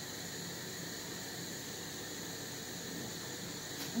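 Steady, faint hiss of room tone with a few thin high tones running through it, and one faint tick near the end; no distinct sound from the work stands out.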